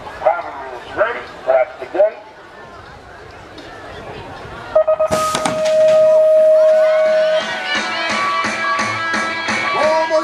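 BMX start-gate sequence: a spoken cadence call, then about five seconds in the start tones, short beeps leading into one long held tone, as the gate drops with a clatter. Voices then shout and cheer as the riders race away.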